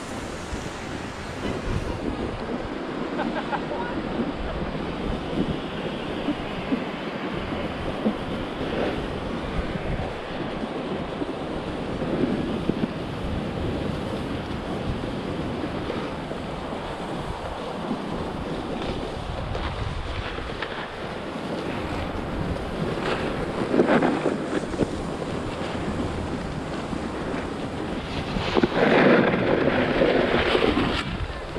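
Wind rushing over an action camera's microphone, mixed with a snowboard's base and edge hissing and scraping over groomed snow during a descent. The sound is a steady rush, with louder scraping swells about three-quarters of the way in and again near the end.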